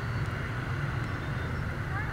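Steady low rumble of many motorbike engines idling and creeping in a dense traffic jam.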